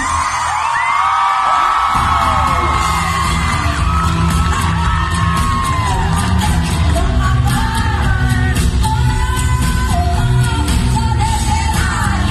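Live pop-rock concert heard from within the audience: high shrieks and whoops from the crowd over a sparse opening, then the full band with drums and bass guitar comes in about two seconds in and a woman sings the lead into a handheld microphone.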